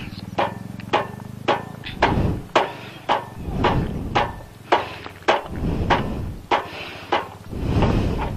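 Repeated sharp knocks, roughly two a second, from hammering at the rear wheel of a Royal Enfield motorcycle. A low engine hum stops about two seconds in.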